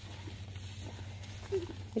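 A young calf chewing a mouthful of fresh grass, with faint, short crunching sounds.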